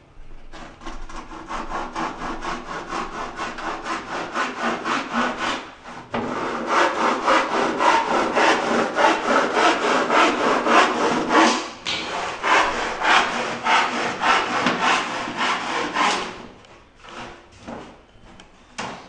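Hand saw cutting through a plywood board in quick, even back-and-forth strokes, with short pauses about six and twelve seconds in, stopping shortly before the end.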